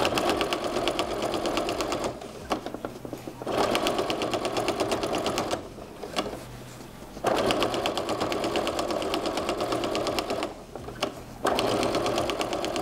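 Electric sewing machine stitching a quarter-inch seam through a quilt sandwich of border strip, quilt top, batting and backing. It runs in bursts of two to three seconds with short stops between them.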